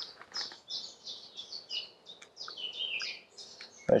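Woodland songbird singing: a continuous run of short, high chirping notes.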